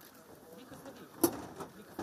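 Faint speech: a man haltingly repeating the Turkish word 'bir' before starting a sentence, with one sharp click a little over a second in.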